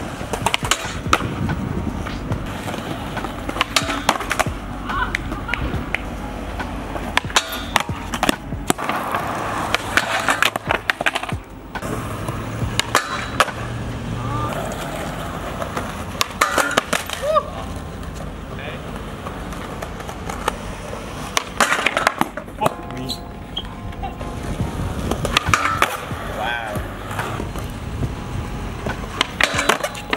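Skateboard wheels rolling over concrete and asphalt, broken by repeated sharp clacks of the board popping, hitting and sliding along a steel flat rail and landing back on the ground.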